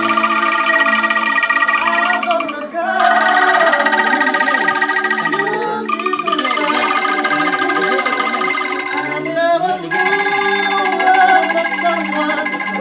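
Bamboo angklung ensemble shaken in sustained, fluttering chords, with an electronic keyboard playing along; the chord changes about every three seconds.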